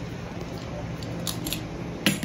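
Light handling of a plastic potty lid and cardboard box: a few soft clicks over a steady low background hum.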